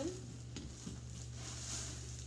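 Soft rustling of a foil-bubble insulated box liner and produce packaging being handled, over a low steady hum.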